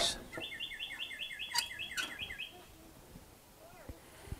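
A songbird's rapid trill, the same chirp repeated about seven times a second for about two seconds. Partway through comes a sharp metallic clank as the steel lid of the offset smoker is shut.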